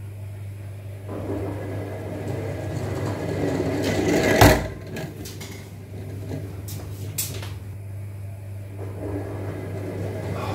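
A rubber-band-powered three-wheeler with CD wheels rolls across a hard floor, its rumble growing louder as it comes closer. About four and a half seconds in there is one sharp knock as it hits something, then a few lighter clicks. Near the end the rolling rumble starts to build again.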